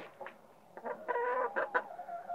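Domestic hen clucking: a run of short pitched calls starting about a second in.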